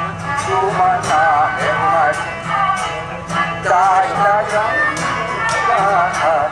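A man sings a Baluchi classical song (sot) in a wavering, ornamented melodic line, with string-instrument accompaniment keeping a regular beat of strokes, about two to three a second.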